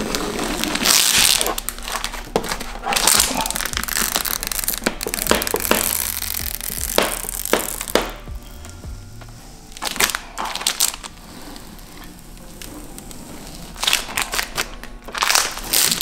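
Clear plastic masking film being peeled back at 180 degrees off a freshly applied vinyl headlight tint, crinkling and crackling in irregular bursts, quieter for a few seconds past the middle.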